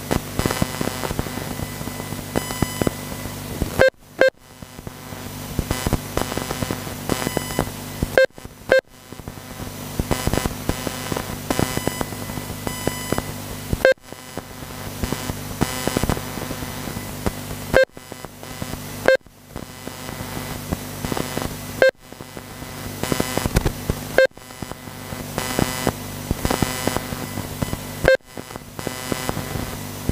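Radio-controlled model racing cars running on the track, a steady mixed whir. Every few seconds a short sharp beep cuts in, after which the sound drops out briefly and swells back.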